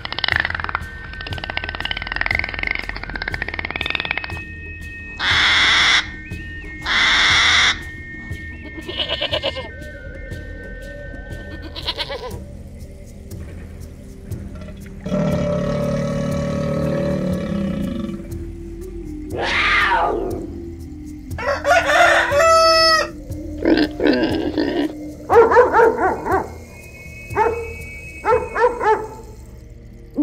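A succession of different, short animal calls over background music.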